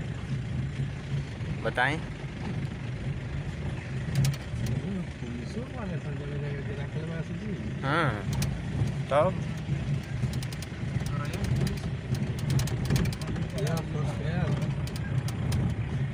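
Car engine running steadily at low speed, heard from inside the cabin while driving on an unpaved track, with scattered light ticks.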